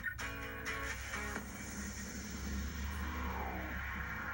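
Guitar music played through a television's speaker.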